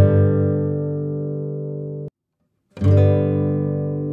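Instrumental acoustic guitar music: a chord is struck and left to ring, cuts off suddenly about two seconds in, and after a short silence a new chord is struck.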